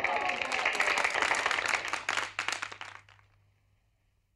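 A crowd clapping, with voices mixed in, fading out about three seconds in.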